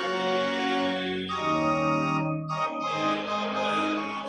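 Organ playing the hymn tune in sustained chords, with no singing heard, as an interlude between verses; the chords break off briefly a little past halfway.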